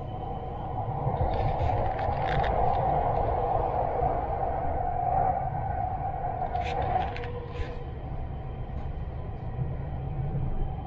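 Running noise of a Dubai Metro train, heard inside the carriage as it travels along the elevated line: a steady low rumble with a droning hum. It grows louder about a second in and eases off after about seven seconds, with a few short clicks and rattles along the way.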